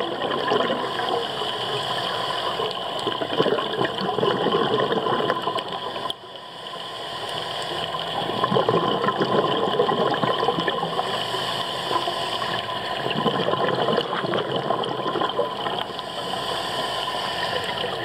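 Underwater noise picked up by a camera below the surface: a steady rush of moving water with fine crackling throughout, dipping briefly about six seconds in.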